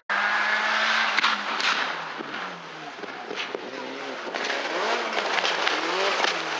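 Rally car engine at high revs: its note holds for about a second, drops over the next couple of seconds, then rises and falls again as the car goes through the gears.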